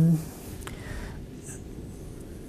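Faint rustling and handling of paper sheets as lecture notes are picked up, with a light click about two-thirds of a second in.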